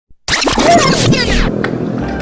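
A record-scratch sound effect, loud and lasting about a second with quickly falling pitch sweeps, starting just after a brief dropout to silence. Quieter background music follows.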